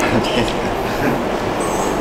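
Steady rumbling background noise with faint voices underneath.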